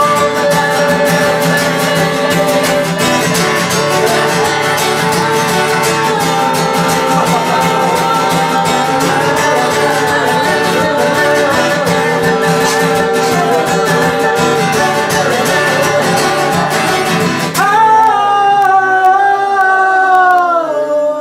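A man singing a song while accompanying himself on a steel-string acoustic guitar. Near the end the guitar drops out and he holds one long high note on his own.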